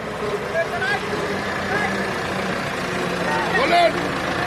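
Tractor diesel engine running steadily, with people's voices calling over it; a louder call comes near the end.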